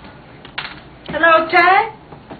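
A person's voice making one drawn-out, wordless vocal sound with a wavering pitch, starting just over a second in, preceded by a few short clicks.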